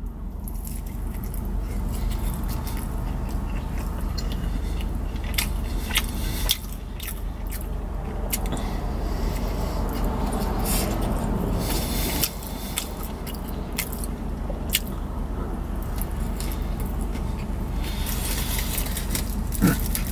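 Close-up biting and chewing of a bacon cheeseburger, with scattered short crackles from the foil wrapper being handled, over a steady low background hum.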